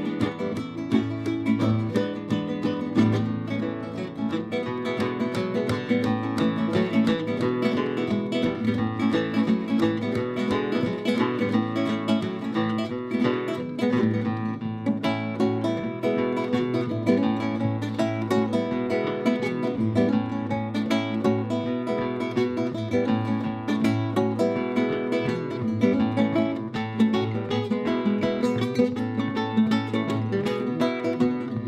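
Solo flamenco guitar, nylon-strung, played with the fingers in a continuous flow of plucked notes and chords.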